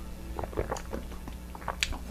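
A person sipping and swallowing a drink: a few soft mouth clicks and small gulps spread over a second or so, over faint background music.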